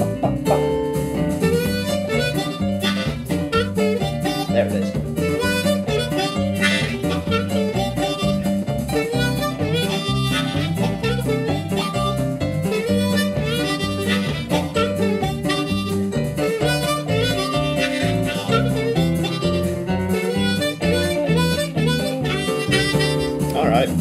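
Diatonic blues harmonica played with cupped hands, a lick with bending notes, over a blues backing track with guitar and bass in a two-feel groove in G.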